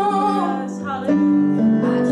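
A woman singing a slow worship song, accompanying herself on a Roland FP-80 digital piano. The voice and keyboard hold long notes, moving to a new chord about a second in.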